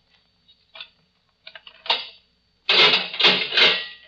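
Radio-drama sound effect of a jail cell door being unlocked and opened: a few soft clicks, then a loud metallic rattling clatter lasting about a second near the end.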